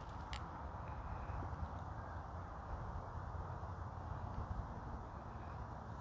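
Quiet, steady outdoor background noise with a low rumble, and one faint click just after the start.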